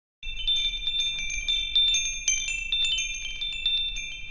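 Wind chimes tinkling: many high, ringing metal notes struck at random and overlapping, starting a moment after a brief silence.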